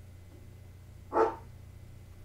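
Steady low hum with one short voice-like sound a little over a second in.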